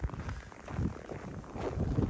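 Footsteps on packed snow, a run of uneven steps, with wind buffeting the microphone.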